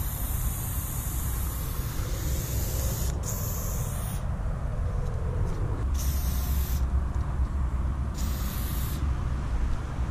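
Aerosol spray paint can hissing as outlines are sprayed: one long spray of about three seconds, a shorter one right after, then two brief bursts about six and eight seconds in. A steady low rumble runs underneath.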